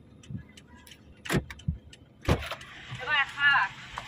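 Two sharp clicks from a parked car's passenger door about a second apart as the door is opened, then a brief voice.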